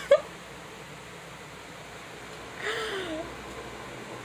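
A young woman's stifled laughter, muffled behind her hand: a short burst right at the start, then a faint, brief muffled laugh about three seconds in, over quiet room tone.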